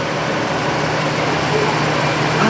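Steady low mechanical hum with an even hiss over it, a continuous background drone with no distinct events.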